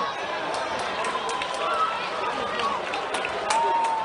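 Basketball arena crowd chatter with players running on the hardwood court: a scatter of sharp footfalls and ball bounces as the ball is brought upcourt.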